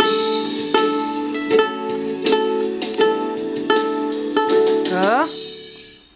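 Violin strings plucked pizzicato, struck together about every three-quarters of a second so that the same few notes ring on. Near the end a note slides upward in pitch, and the sound then fades out.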